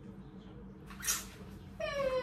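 A short breathy hiss about a second in, then near the end a high-pitched vocal call that glides down in pitch, over a faint steady hum.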